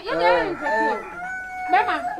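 A rooster crowing once, ending in a long held note, heard among people's voices.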